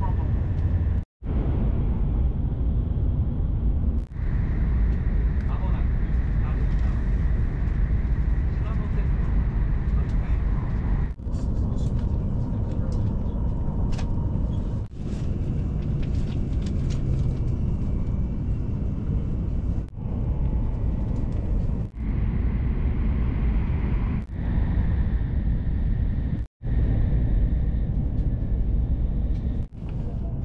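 Running noise of a Hokuriku Shinkansen train heard from inside the passenger cabin: a steady low rumble with a rushing noise over it. It breaks off abruptly to silence about a second in and again near the end.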